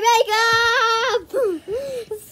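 A young girl's voice singing a long held note on an open "ah", then breaking into two short swooping cries.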